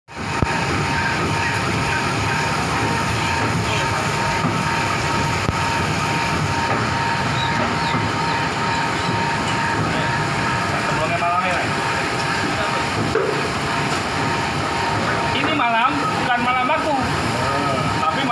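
Steady, loud machine-like noise with a few faint steady tones. Voices talk briefly in the middle and again near the end.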